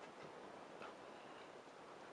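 Near silence: faint room tone with a couple of faint short clicks.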